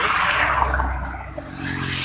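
A motor vehicle passing close by on the road: a rush of air and tyre noise over a low engine rumble that fades within about a second and a half. Then a steadier low engine hum comes in as a motorcycle approaches.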